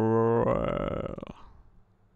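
A man's drawn-out groan of frustration: one low, steady 'uhh' that turns rough and gravelly and fades out after about a second and a half.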